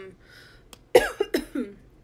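A woman coughing about a second in: one sharp cough followed by two or three shorter ones.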